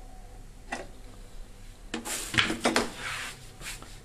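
Handling noise from an electrical test setup being disconnected on a tabletop: a single click about three-quarters of a second in, then a cluster of knocks and scrapes in the second half.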